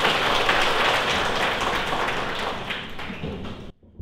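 Audience applause: many people clapping at once, tapering off and then stopping abruptly just before the end.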